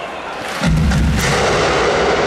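A sudden heavy boom about two-thirds of a second in at a stadium rock concert, ringing on as a deep rumble, with a few sharp cracks just after.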